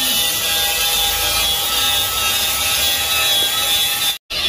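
Angle grinder grinding the steel chassis rail of a VW Kombi, a steady loud racket that holds the whole time. The metal is being ground clean where a new reinforcement plate for the shock absorber mount will be welded.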